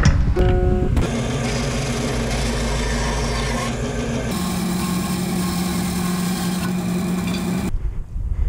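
A few plucked acoustic-guitar notes, then from about a second in the steady running of woodshop machines, a wood lathe and a bandsaw working an ash bat blank. The machine tone changes abruptly a little past the middle and cuts off shortly before the end.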